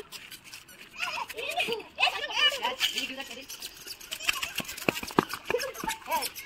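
Voices of adults and children talking and calling out, with a few short sharp taps a little after the middle.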